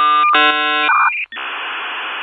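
Dial-up modem connecting: a loud cluster of steady electronic tones broken by a short gap, a brief higher tone about a second in, then steady hiss.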